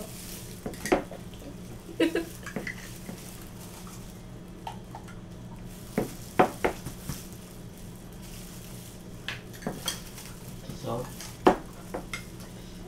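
Metal spoons clinking and scraping against a small pot and a sauce jar as sauce is scooped out and spread on pizza crusts: scattered short knocks, a few close together, over a steady low hum.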